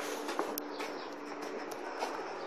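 A wheelbarrow being pushed over stall shavings, with a few soft clicks and rattles over a faint, steady low hum.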